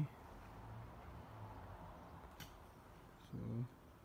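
Quiet outdoor background with a faint low hum, one sharp click about halfway through, and a brief hummed syllable from a man's voice a little before the end.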